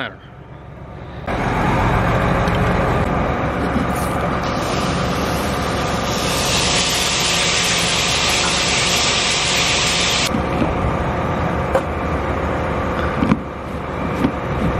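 Water from a garden hose running into a plastic liquid-fertilizer tank on a planter: a steady rushing splash that starts about a second in, with a hissier stretch in the middle.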